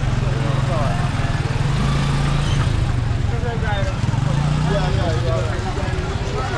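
A small motorcycle engine running close by at low revs, its pitch rising and falling a little, under the chatter of many voices of a busy crowd.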